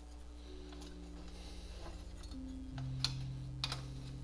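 Soft ambient background music of long held notes that change about two and a half seconds in. Over it come a few light clicks and rustles as a cable harness and a thin metal RF shield are handled.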